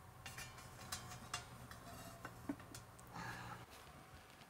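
Faint light clicks and taps of a plastic bucket of stabilizing resin, weighed down with metal discs, being set down inside a stainless steel vacuum chamber pot, over a low steady hum that drops out near the end.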